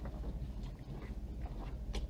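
Paper rustling in short scattered bursts as gloved hands unfold and handle a folded package leaflet, over a low steady hum.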